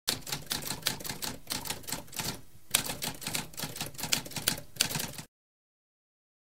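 Typewriter keys clacking in a rapid run of strikes, with a brief pause about two and a half seconds in; the typing stops a little after five seconds in.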